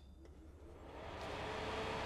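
Pace fume extractor's stock 240-volt 120 mm fan just switched on and spinning up: a rush of air that grows louder over the first second and a half and then holds steady, with a faint steady hum tone coming in about a second in. It is an awfully loud fan.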